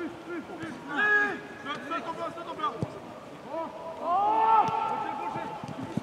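Voices shouting calls during football play: several short shouts, a loud one about a second in and a longer held shout at about four seconds. There is one dull knock near the middle.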